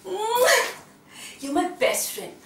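A woman squealing with excitement: a rising squeal lasting about half a second at the start, then a couple of short voiced bursts near the end.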